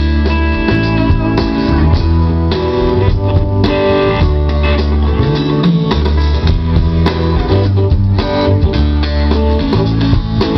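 Live band playing the instrumental intro of a pop-rock song: a strummed acoustic guitar over a drum kit, with strong low bass notes, and no singing yet.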